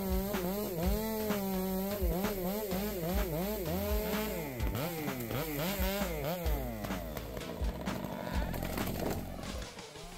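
Stihl MS 462 two-stroke chainsaw running in a felling cut, its pitch dipping and rising every half second or so as the engine loads and frees, with background music laid over it.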